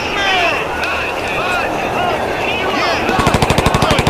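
Rapid burst of automatic gunfire, about twelve shots a second, starting about three seconds in, over a dense layer of many overlapping short gliding, sweeping sounds.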